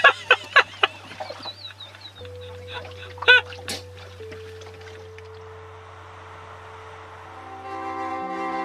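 Two women laughing hard, in short gasping bursts over about the first second, with one more high burst of laughter about three seconds in. Under it a soft music bed of low held tones runs on and swells into fuller orchestral music near the end.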